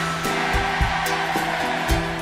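Live concert recording of a pop song: a held low bass note under shorter chord notes that change every fraction of a second, over a steady wash of noise.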